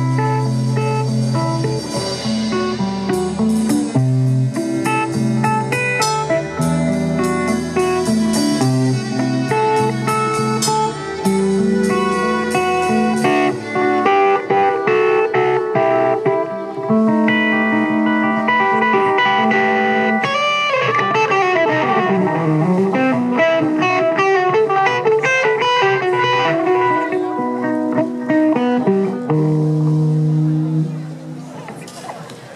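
Live rock band playing an instrumental passage: electric guitar over drums, electric bass, violin and Hammond organ, recorded on a camcorder. The bass drops out about halfway through, and a few seconds later a note swoops down and back up.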